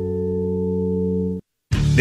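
A held music chord of steady tones that cuts off abruptly about one and a half seconds in. After a split second of silence, a radio station jingle starts with music and voice.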